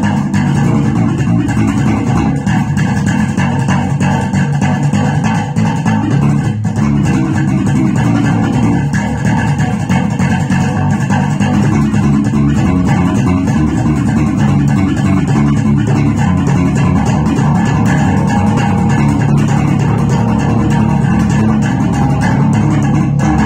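Electric bass guitar plucked with the fingers, playing a continuous groove without pauses.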